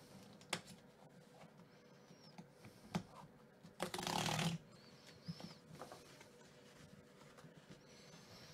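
Cardboard mailer's perforated tear strip being pulled open by hand: faint handling and a few light clicks, with one short tearing rip just under a second long about four seconds in.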